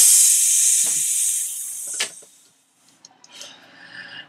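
A loud hiss, like escaping steam, that starts suddenly and fades away over about two seconds, with a short laugh in it.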